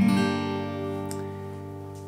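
Acoustic guitar with a capo at the third fret, an E minor chord shape strummed once and left to ring, fading slowly.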